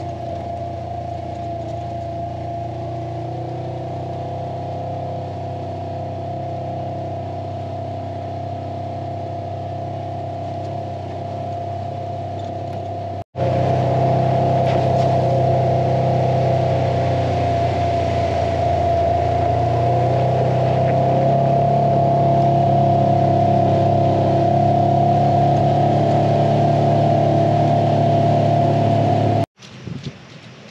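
Polaris RZR 900 side-by-side running at a steady cruising speed, a constant engine hum with a held whine over it. About halfway through, the sound drops out for an instant and comes back louder but otherwise unchanged.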